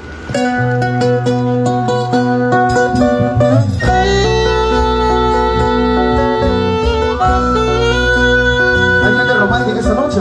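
A live band's music kicks in about a third of a second in, with guitars to the fore over held chords. A heavy bass comes in fully about four seconds in.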